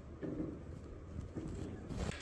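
Muffled footsteps and shuffling on a hard floor with a low, indistinct murmur of voices, picked up by a hidden camera; a few soft bumps and a sharper knock near the end.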